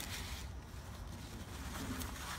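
A crumpled paper towel rubbing and crinkling against a paper plate as it wipes wet white paint off; a soft rustling.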